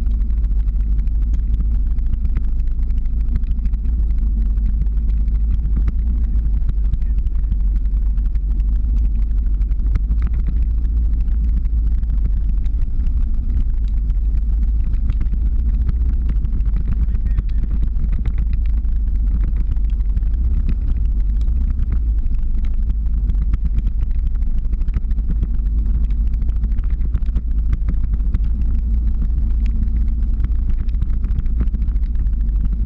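Steady low rumble of the motor vehicle that carries the camera, driving slowly uphill just ahead of the rider.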